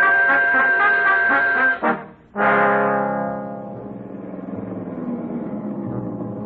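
Brass-led orchestral music bridge marking a scene change in a radio drama: a loud held brass chord for about two seconds that cuts off, then a second chord that starts loud and fades to a softer sustained chord.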